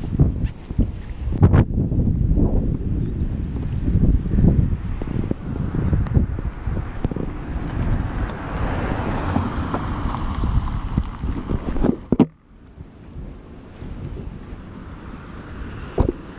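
Wind buffeting a small action camera's microphone: a loud, irregular low rumble, with a few knocks from the camera being handled. It drops away suddenly about twelve seconds in and is quieter after that.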